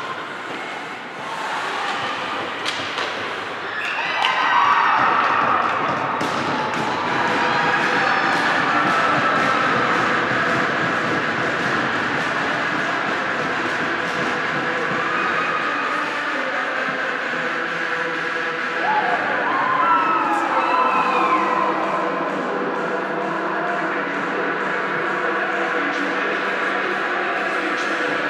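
Ice hockey play in an indoor rink: sticks and the puck clacking and thudding on the ice and boards, with skates and echoing rink noise. Voices shout about four seconds in and again about twenty seconds in.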